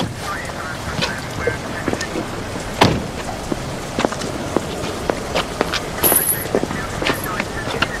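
Steady hissing outdoor background noise with scattered clicks and knocks, the sharpest about three seconds in.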